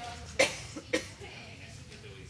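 Two short coughs about half a second apart, the first louder, over faint murmur in a room.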